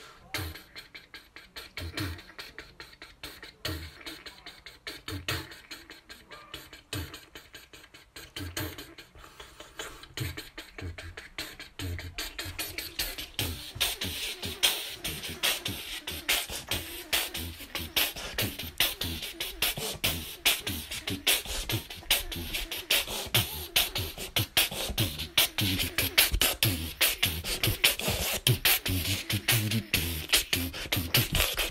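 Beatboxing: a voice making drum sounds, at first sparse kick-drum beats about once a second, then building less than halfway through into a dense, louder rhythm of quick clicks and hi-hat-like hiss over the kicks.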